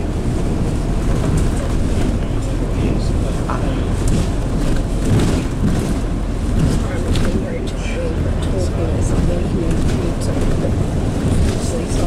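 Inside a moving bus: steady engine drone and road noise as the bus runs along, with faint voices in the background.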